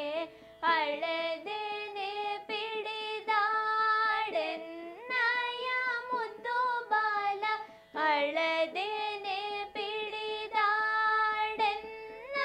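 Female voices singing a slow Carnatic-style devotional lullaby, with held, ornamented notes over a steady background drone and brief breath pauses.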